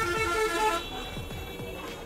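A bus horn sounds one short blast of under a second, over background music with a steady beat.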